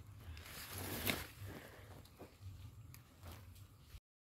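Faint rustling and footsteps in grass and undergrowth, with one louder brushing stroke about a second in and a few softer ones after.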